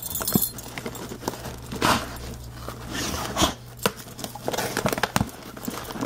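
Cardboard box and paper packing rustling and knocking as it is rummaged, in a few short bursts with scattered clicks.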